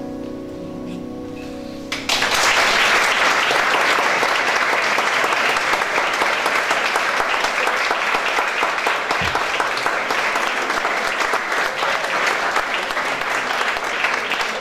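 A grand piano's final chord rings and fades away. About two seconds in, the audience breaks into loud, sustained applause.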